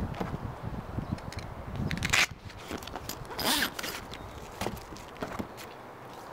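Zipper on a Softopper truck-bed soft topper's fabric rear panel being pulled open, with fabric rustling and handling noise; the two strongest zipper strokes come about two seconds and three and a half seconds in.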